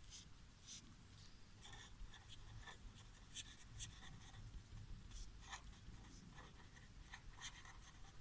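Faint sound of a pen writing on paper in many short, irregular strokes.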